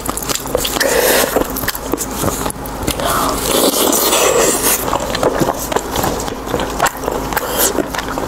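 Close-miked biting and chewing of a chunk of crisp-skinned pork: wet mouth sounds with many short crackles and clicks throughout.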